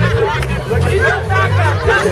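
Crowd chatter and voices over loud music with a deep bass line changing note about every half second.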